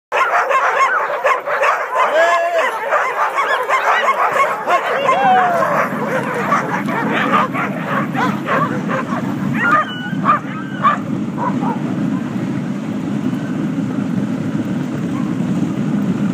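A team of Alaskan husky sled dogs barking, yipping and howling excitedly at the start of a run. About ten seconds in they fall quiet as they start pulling, leaving a steady rushing noise of the moving sled.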